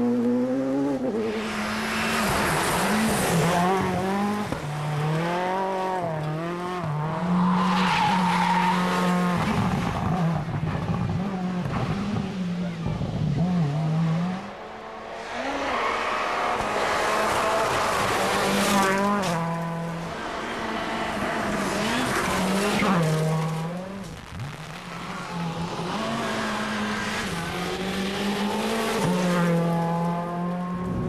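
Seat rally cars driven flat out on gravel stages, their engines revving up and down through repeated gear changes as they pass, with gravel and tyre noise. The sound drops briefly twice, between passes.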